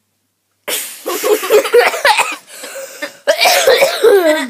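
A boy coughing hard in loud fits mixed with laughter, short of breath from laughing. It starts about half a second in, eases off near the middle and flares up again near the end.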